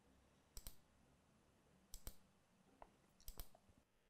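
A few faint computer mouse clicks, some in quick pairs, spread over a few seconds as user-menu toggles are switched.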